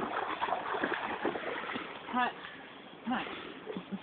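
A dog paddling through a shallow stream, splashing the water. A short rising, wavering vocal call comes about two seconds in.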